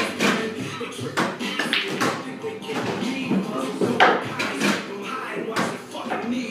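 Several sharp clicks of pool balls striking, the loudest about four seconds in, over background music and voices.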